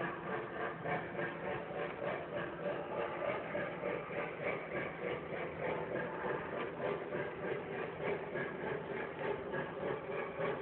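Lionel Blue Comet O gauge model train running on three-rail track, its passenger cars rolling by with a steady rumble and clatter that rises and falls regularly a few times a second.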